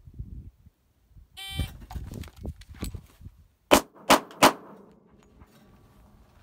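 Electronic shot-timer beep about a second and a half in, then rustling as the shooter rises and draws, then three handgun shots in quick succession about four seconds in, each echoing briefly.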